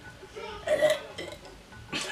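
A short, throaty vocal sound from a person, a little over half a second in and lasting under half a second.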